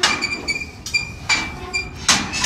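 Steel stock-trailer gate clanging shut and rattling at its latch: a sharp metal clank at the start with a ringing tone, lighter clinks, and a second clank about a second and a half in.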